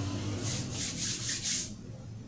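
A quick run of about five short, scratchy rubbing strokes, over a low steady hum.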